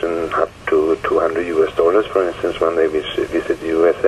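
Speech only: a man talking, his voice thin and narrow-band as over a telephone line.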